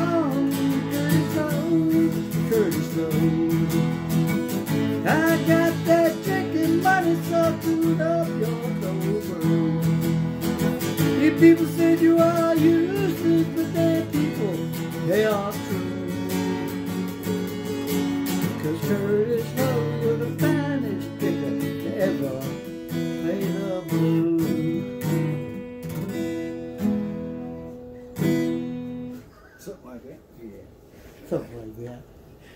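Acoustic guitar playing, with the music trailing off near the end.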